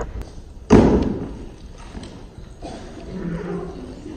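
A single heavy thud about three-quarters of a second in, with a short ringing tail, as a set piece is put down on a wooden stage floor.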